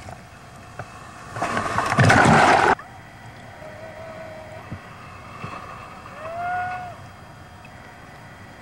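Ocean water heard from a swimming camera at surf level: a loud rush of water for about a second and a half, cutting off abruptly, then a faint steady wash of the sea with a few faint wavering tones.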